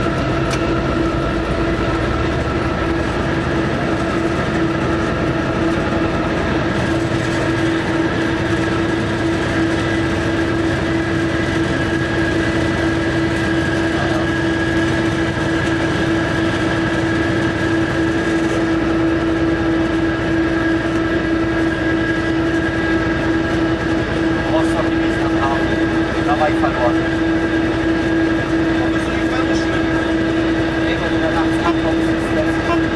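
Nohab diesel-electric locomotive heard from inside its cab while hauling a heavy freight train: a loud, steady drone with a constant hum and higher whining tones over the rumble of running on the rails.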